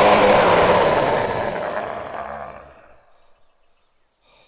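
A long scream over a loud rushing roar, both fading away over about three seconds into near silence.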